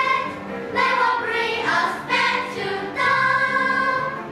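Children's choir singing an English song together in a series of held notes, the last note held for about a second near the end.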